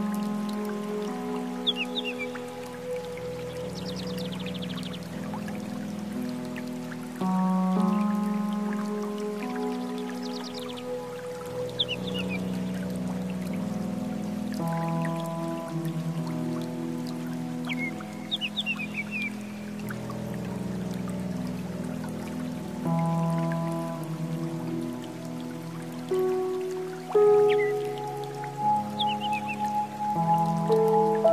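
Slow meditation music: held chords that change every few seconds, with short, quick high chirps heard now and then over them, about six times.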